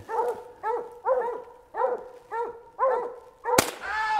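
A hunting dog barking at treed game, short barks about twice a second. Near the end a single gunshot rings out sharply, louder than the barking.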